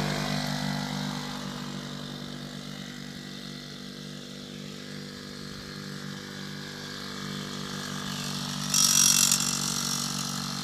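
Suzuki JR50 49cc two-stroke minibike engine running at a low, steady speed. It fades as the bike rides away and grows louder again near the end as it comes back close, with a brief rush of hiss.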